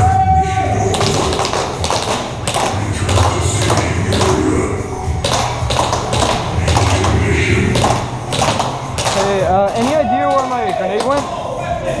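Indistinct voices with many sharp taps and knocks scattered through.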